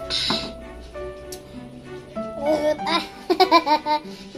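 Background music with held notes runs throughout. Right at the start there is a short breathy burst. From about two seconds in a woman laughs loudly in a quick run of short bursts.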